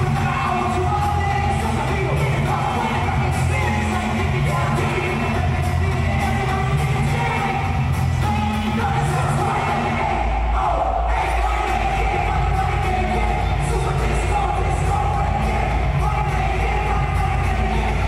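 Live hip-hop performance over an arena PA: rapped and shouted vocals over a loud, bass-heavy beat, with the bass line dropping deeper about ten seconds in.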